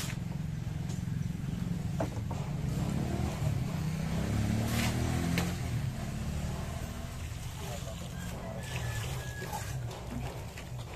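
A motor vehicle's engine running past, growing louder through the middle and easing off, with a few sharp taps along the way.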